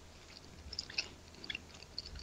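Faint mouth sounds of a man chewing a gummy bear, with scattered small clicks through the middle of the stretch.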